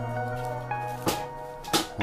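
Background music with held notes, broken by two sharp knocks about a second in and near the end.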